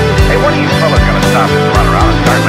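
Heavy rock band track: drums and distorted guitars, with a high lead line that bends and wavers up and down in pitch over them.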